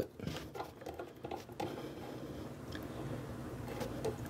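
Faint clicks and rubbing of a hand handling a braided steel toilet supply line and its brass fitting while reconnecting it, mostly in the first second and a half, followed by a faint steady hiss.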